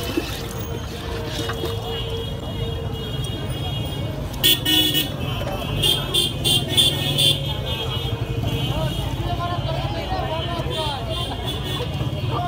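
Busy street traffic with a steady low rumble and voices in the background. Short high-pitched horn toots sound in quick succession about halfway through.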